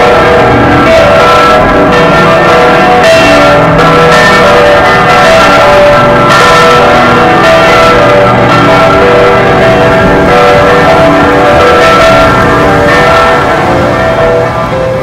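Bells chiming in a dense, continuous peal: many overlapping strikes with long ringing tones, loud and steady, heard as music.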